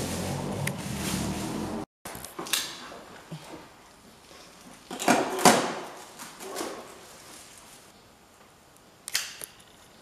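A low murmur of voices that cuts off abruptly about two seconds in, followed by a few short rustles and knocks of handling, the loudest about five seconds in.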